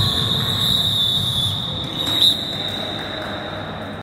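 A steady high-pitched electronic tone, a timer or buzzer sounding at the end of the game, held throughout with a brief louder spot a little over two seconds in.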